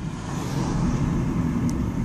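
Car interior noise while driving: a steady low rumble of engine and road, with a brief faint tick near the end.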